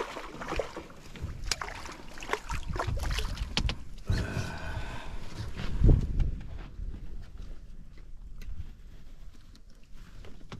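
A hooked fish splashing and thrashing at the surface beside a boat for the first few seconds, then lifted clear of the water. Knocks of handling follow, with a low thump about six seconds in.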